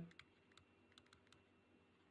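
Near silence with a handful of faint, scattered clicks: a stylus tapping on a tablet screen while words are handwritten.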